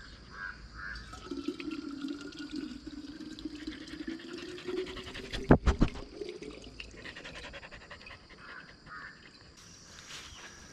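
Water running from a pipe into a water bottle, the pitch rising steadily as the bottle fills. A couple of sharp knocks come about five and a half seconds in.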